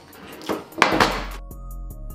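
Metal baking tray set down on a wooden table, a short clatter a little under a second in, followed by background music with held notes.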